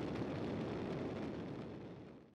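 Steady rushing wind of freefall, a low rumbling noise that fades out near the end.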